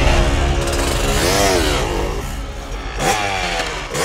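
Cartoon dirt-bike engine sound effect revving up and down, over background music. There is a whoosh about three seconds in.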